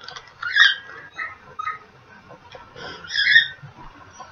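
A boy's short, high-pitched squeaks and whimpers through closed lips while he chews a candy he finds gross, the loudest about three seconds in.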